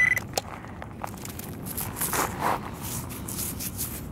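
Small gravel and sand scrapes and crunches, loudest about two seconds in, as a penny is recovered from a shallow hole in pea gravel. A handheld pinpointer's steady high beep cuts off just as it starts.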